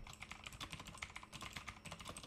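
Quiet, rapid typing on a computer keyboard: a quick run of light keystrokes entering a short phrase.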